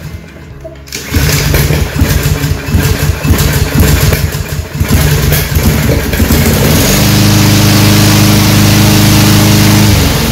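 A brand-new Yardworks push mower's single-cylinder 163cc Briggs & Stratton EXi engine is pull-started on its first start and catches about a second in. It runs rough and uneven for several seconds, then settles into a steady, even run about seven seconds in.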